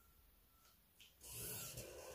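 Marker pen drawn along the edge of a plastic curve ruler on pattern paper: a faint tick about a second in, then a short scratchy stroke.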